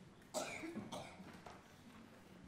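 An audience member coughing in a quiet concert hall: one sharp cough about a third of a second in, followed by a couple of smaller coughs.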